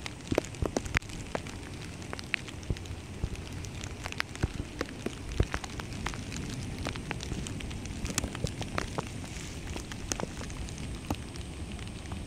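Rain falling: a steady hiss with sharp, irregular taps of drops landing close by.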